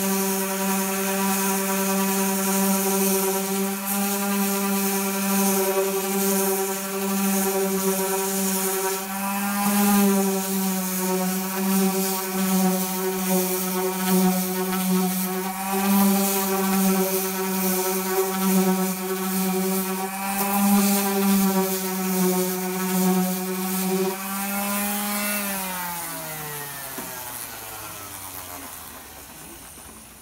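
Random orbital sander running steadily against the hardened filler over a fiberglass wing patch, a constant motor whine with gritty sanding hiss. About 25 seconds in it is switched off and its whine falls in pitch as it spins down.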